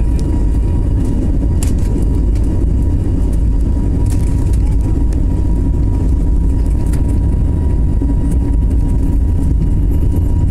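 Jet airliner's turbofan engines at takeoff thrust, heard from inside the passenger cabin during the takeoff roll and liftoff. A loud, steady low rumble with a thin steady tone above it.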